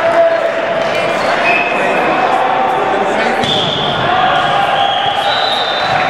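Echoing gymnasium din during volleyball play: indistinct players' voices and volleyballs being hit and bounced in a large hall.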